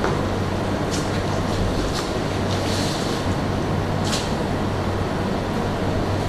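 Steady rushing background noise with a low hum, broken by a few short clicks about one, two and four seconds in.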